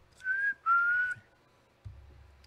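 A person whistling two short notes, the second a little lower than the first.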